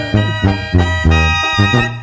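Mexican banda brass section playing an instrumental fill between sung lines: trumpets and trombones on steady held notes over a low tuba bass line in short notes.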